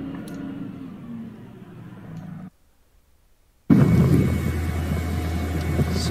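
Steady hum of an Oshkosh Striker airport crash truck heard inside the cab, its tones dipping slightly in pitch, then a second of near silence. Then a louder steady rumble of the truck running outside, with wind on the microphone.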